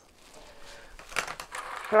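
Faint rustles and light taps of small 3D-printed PETG plastic parts being handled on a tabletop, a little louder in the second half.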